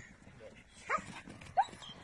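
Young Border Collie barking twice, two short sharp barks less than a second apart, the second louder.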